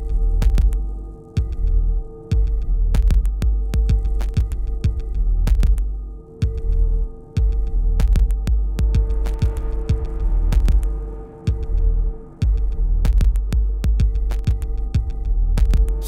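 Minimal glitch electronic music. A heavy sub-bass drone throbs in long blocks that cut out abruptly every few seconds, under a steady hum of held sine-like tones. Sharp digital clicks are scattered irregularly on top.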